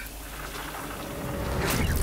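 Low rumbling drone of a horror film's soundtrack, swelling in level toward the end, with a brief hissing rise near the end.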